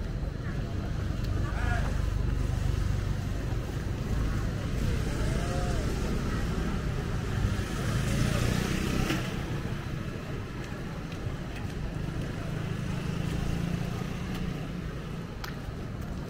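Street ambience: motor scooter engines running and passing on a narrow street, with people's voices in the background. The engine noise swells over the first half and eases off after about nine seconds.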